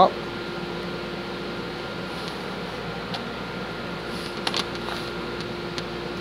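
Steady background hum with a few light taps and clicks of thin laser-cut wooden tray pieces being handled on a table, the clearest pair about four and a half seconds in.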